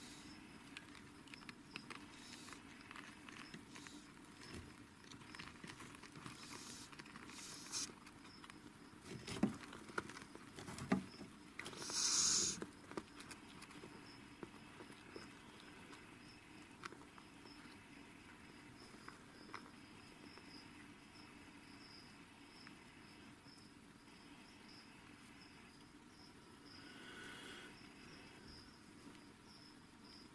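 Faint, steady background noise with scattered small clicks and rustles. A few louder knocks come about nine to eleven seconds in, followed by a short hiss-like burst, and a weaker burst comes near the end.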